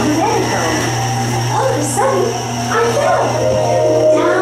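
Dark-ride soundtrack of music and voices, with pitches that slide up and down, over a steady low hum.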